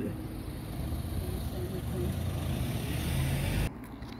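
Road traffic on a multi-lane road: a steady rumble of tyres and engines that builds as a vehicle passes, then cuts off abruptly near the end.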